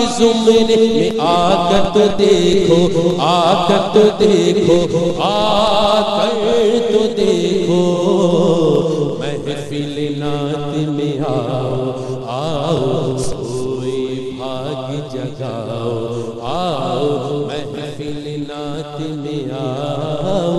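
A man singing an Urdu naat solo without instruments, holding long melismatic notes with a wavering vibrato over a low steady drone. The singing grows a little softer from about nine seconds in.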